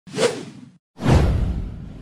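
Two whoosh sound effects for an animated logo reveal: a short swish at the start, then about a second in a longer, louder whoosh with a deep low rumble that fades away.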